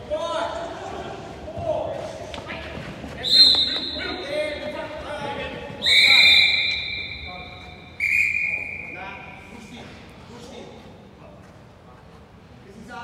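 Sports referee's whistle blown three times, a short blast about three seconds in, then two longer blasts, ringing in a large indoor hall, with players shouting in the first few seconds.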